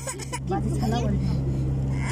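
Steady low hum of an idling vehicle engine, with indistinct voices talking over it.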